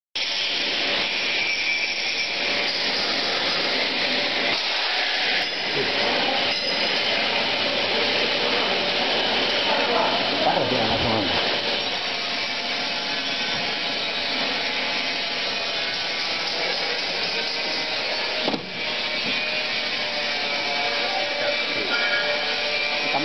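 Steady, loud mechanical noise of machinery running in a factory hall, with a brief dip a little before the end.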